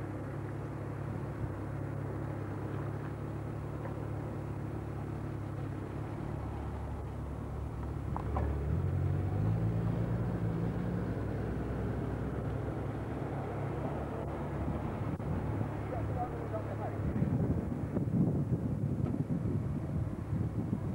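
Heavy lorry's diesel engine running at low revs under load, its revs rising briefly about halfway through and then settling back to a steady beat.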